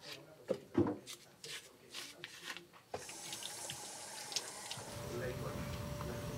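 A few light clicks of handling, then, about three seconds in, tap water running into a metal sink as a piece of peeled cassava root is rinsed under it. Near the end the sound gives way to a lower steady hum with a faint thin tone.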